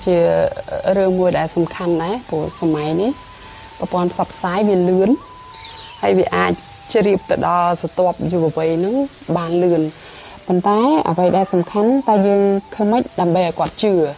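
A person's voice talking in quick, rising and falling phrases, over a steady high-pitched hiss.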